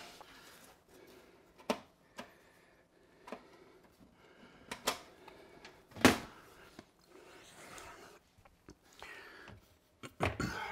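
Fractal Design R5 PC case's side panel being handled and taken off: a scattering of light clicks and knocks, the loudest about six seconds in.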